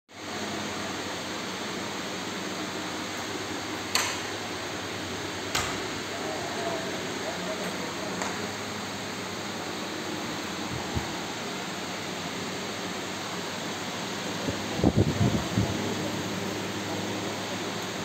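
Steady room hiss like a fan or air conditioner running, with a few sharp clicks about four, five and a half and eight seconds in, and low bumps of handling noise around fifteen seconds in.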